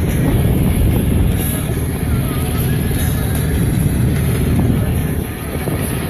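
Steady low rumble of a boat under way, with music playing over it.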